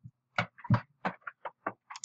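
A quick, irregular run of short clicks and taps, about eight or nine in two seconds.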